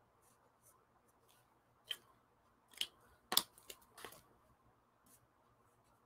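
Faint scratching and a handful of short clicks from felt-tip markers (Crayola Supertips) being worked on paper, set down and picked up. The loudest clicks come about three and a half seconds in.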